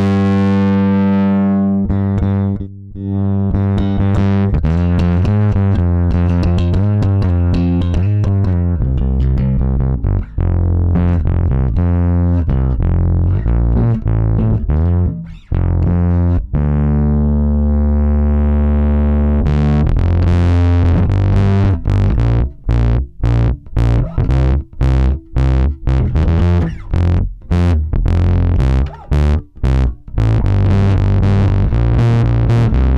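Electric bass guitar played through the Ashdown SZ Funk Face pedal's 12AX7 valve drive section alone, with the auto-wah off, giving a distorted tone. A held note opens, then a riff, a long sustained note past the middle, and short clipped notes in the last several seconds.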